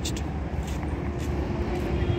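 Steady low rumble of a motor vehicle engine running, with a faint steady tone joining about a third of the way in.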